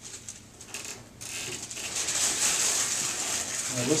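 Rustling of clothing and the padded treatment table as a person gets up from lying face down and sits on its edge: a few light clicks at first, then a steady rustling hiss that builds from about a second in.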